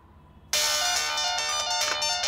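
Mobile phone ringing with a melodic electronic ringtone, starting about half a second in.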